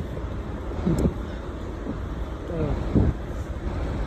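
Steady low rumble of buses and road traffic at a bus stop, with a short voice fragment a little past halfway and a single click about a second in.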